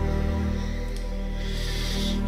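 Background music of sustained, held notes over a steady low bass.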